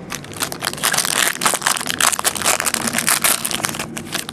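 A foil trading-card pack wrapper being torn open and crinkled by hand, a dense run of irregular crackles that is loudest in the middle.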